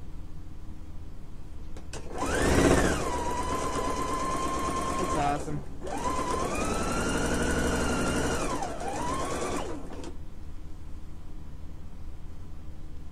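Husqvarna Viking electric sewing machine stitching a seam. Its motor whine rises quickly to speed about two seconds in and holds steady. It breaks off briefly around the middle, runs again at a slightly higher pitch with a short dip, and stops near the end.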